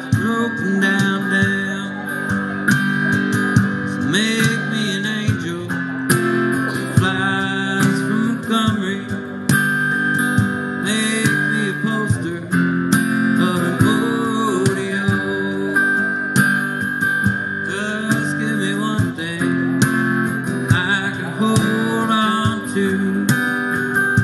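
Instrumental break of strummed acoustic guitar, with a cajon played with brushes keeping a steady beat under it.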